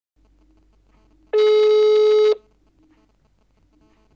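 Telephone ringback tone: a single steady beep about a second long over a faint line hum, the sign that the outgoing call is ringing at the other end and has not yet been answered.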